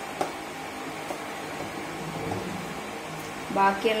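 Batter being stirred by hand in a ceramic bowl, with a few faint knocks of the utensil against the bowl, over a steady room hum. A woman starts speaking near the end.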